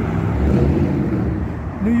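Road traffic passing close by on a busy multi-lane street: cars and engines going past in a steady low rumble, with wind on the microphone.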